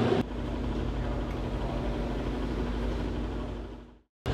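Steady low mechanical hum with a faint constant tone, fading out to silence near the end.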